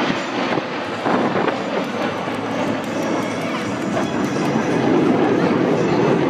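Jet engine noise from a formation of USAF Thunderbirds F-16 Fighting Falcons flying overhead: a loud, steady rush that swells about a second in and again near the end.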